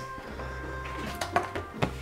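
Soft background music with held tones, and a few light clicks and rustles of a cardboard LP jacket being picked up and handled, the clicks falling in the second half.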